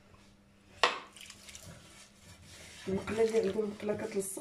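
A single sharp clink about a second in, a small glass set down on a stone countertop, followed by faint handling sounds. A woman's voice comes in near the end.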